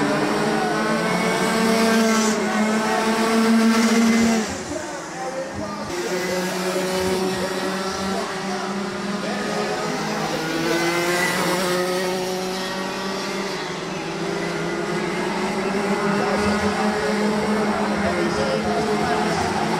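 Several Rotax Max Junior karts' single-cylinder two-stroke engines running together, their pitch rising and falling as the throttle opens and closes. The sound drops off sharply about four seconds in.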